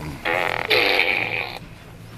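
Fart Blaster toy playing a recorded fart noise from its speaker: one blast about a second and a half long, starting a moment in.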